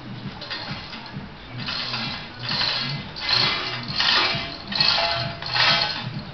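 Metal chain of a hand-operated hoist rattling in about six bursts, one a little under a second apart and growing louder, as it is pulled to turn an 800 kg solid steel swing keel hanging from it.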